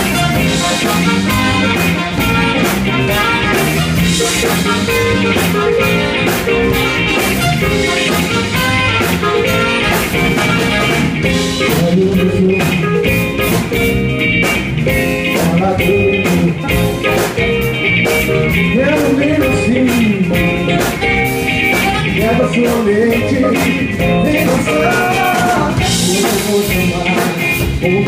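A live soul-pop band playing: electric guitar, bass and drum kit, with a male lead singer whose voice comes through in phrases, stronger in the second half.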